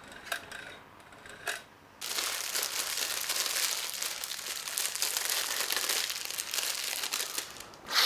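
Small clear plastic bag crinkling as it is handled between the fingers, starting suddenly about two seconds in and running on densely until just before the end. A couple of faint clicks come before it.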